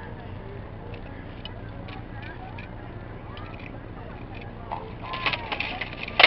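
Low steady background hum with scattered faint knocks, then from about five seconds in a quick flurry of sharp knocks: rattan swords striking armour as two armoured fighters exchange blows.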